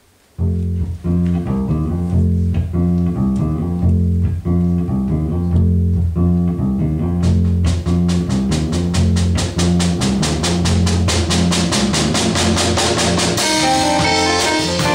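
A soul-jazz groove kicks in half a second in: a repeating electric-bass riff with keyboard chords. About seven seconds in the drum kit joins with a steady cymbal beat.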